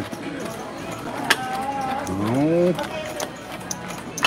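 Background chatter at a casino gaming table, with one sharp click about a second in and a short rising voice, like an 'ooh', about two seconds in.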